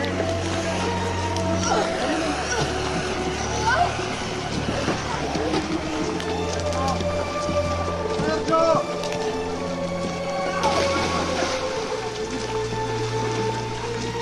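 Music of sustained, slowly changing chords, with indistinct voices calling out over it.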